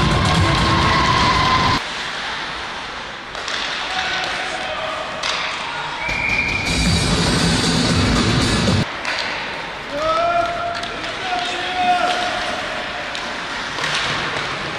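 Loud background music that cuts off about two seconds in. After it come ice hockey game sounds: sticks and puck knocking, with players' shouts.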